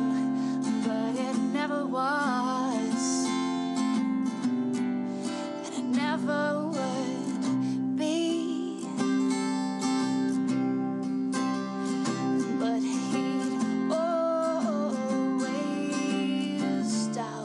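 A young woman singing a slow, folk-style story song with vibrato over a strummed acoustic guitar.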